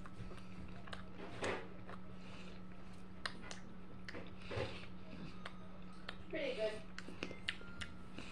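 A person quietly chewing a cookie, with a few faint mouth noises and small clicks and a brief hum of voice about six and a half seconds in, over a low steady hum.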